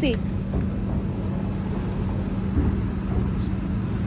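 Steady low rumble of city street traffic, with a constant engine-like hum running underneath.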